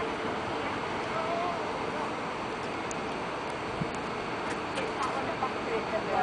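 Steady rushing background noise with faint voices of people talking nearby, the talk picking up near the end.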